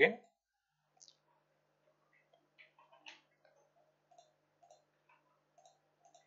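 A few faint, sparse clicks of a computer keyboard and mouse as a short ID and password are typed, over a faint steady low hum.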